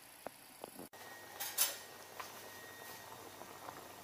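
Faint kitchen sounds of a ladle in a pan of chicken-and-rice porridge: a couple of light clicks against the pan, then a short swish of stirring and a few soft knocks.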